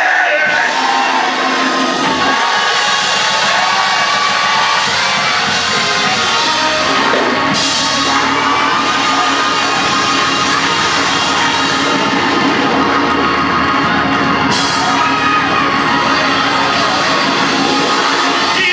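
Loud, continuous live church music, with the congregation shouting and whooping in praise over it.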